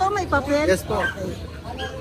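A dog barking in several short barks, with people talking around it.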